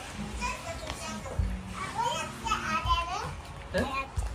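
A young child's high voice talking and calling out, with lively rising and falling pitch, and a few low thumps underneath.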